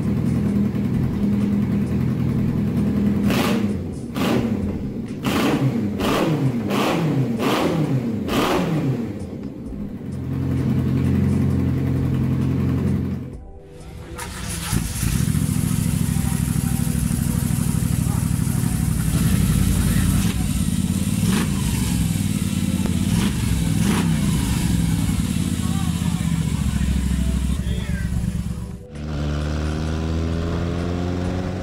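A custom Honda CB750 Seven Fifty's inline-four engine revved in a string of about six quick blips, each falling back toward idle, then idling. About halfway through it cuts to a Moto Guzzi V-twin running steadily, with a few small rises in revs.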